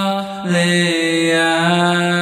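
A male a cappella vocal group singing sustained chords in close harmony, with no instruments. About half a second in the sound dips briefly and the voices move to a new chord, which they hold.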